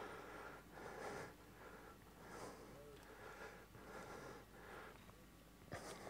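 Near silence, with faint soft breaths close to the microphone every second or so.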